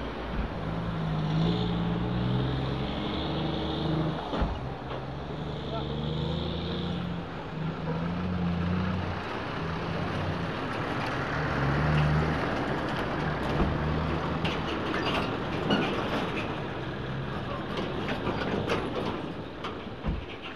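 Heavy trucks running close by as they pull through a roadblock, a dense steady engine and road noise, with low voices talking over it during the first two thirds.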